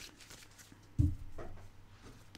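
Oracle cards being handled and drawn from the deck: faint card rustles, with a short soft thump about a second in.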